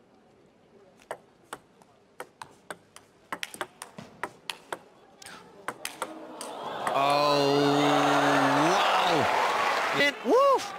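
Table tennis rally: the ball clicking off bats and table in a run of sharp ticks that come quicker as the rally goes on. About seven seconds in, the crowd cheers the point, with one long shout that drops away near the end.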